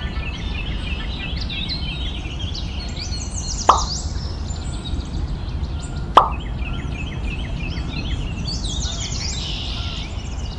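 Birds chirping in many quick rising and falling notes over a steady low rumble. Two short plops with a fast-falling pitch come about three and a half and six seconds in, and they are the loudest sounds.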